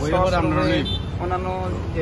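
A person talking in two short phrases over a steady low rumble of road traffic.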